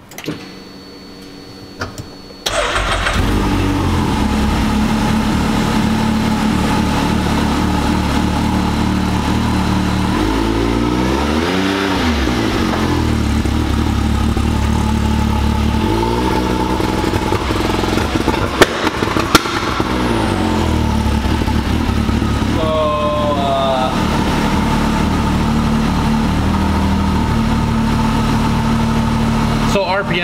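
Can-Am Maverick X3's turbocharged three-cylinder engine starts about two and a half seconds in and runs loud and steady. The revs rise and fall a couple of times, with two sharp pops near the middle, as the engine is tried against the launch control's new 2,500 rpm cut.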